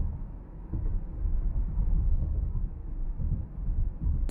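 Road noise inside a moving car's cabin: a steady low rumble from the tyres and engine.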